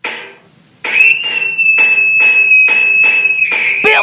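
A short noisy hit that fades out quickly. Then, from about a second in, a school fire alarm rings: a steady high tone pulsing about three times a second.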